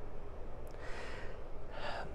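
A man's breaths close to a clip-on microphone: two short, breathy intakes, one about a second in and one near the end, over a low steady room hum.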